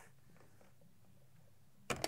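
One sharp plastic click near the end as the brew spout of a Motif Essential drip coffee maker is unclipped and lifted off the brewer. Faint room tone before it.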